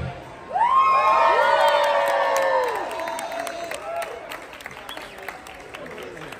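Audience cheering and whooping with clapping. The whoops start about half a second in and die away after about three seconds, leaving fading applause.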